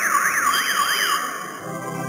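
A siren-like electronic warble sweeping quickly up and down, about three times a second, that cuts off a little over a second in. Sustained organ-like music notes take over near the end.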